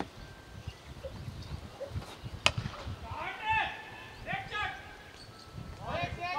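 A cricket bat strikes the ball with a single sharp crack about two and a half seconds in. Players' shouted calls follow.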